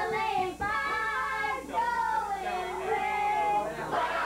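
A group of children's and women's voices singing together, holding long, steady notes.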